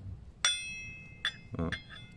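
A steel hex key strikes and rings against the metal tensioner pulley of a timing belt as it is fitted into the tensioner's hex socket. One bright metallic clink comes about half a second in and rings on briefly; a smaller clink follows just after a second.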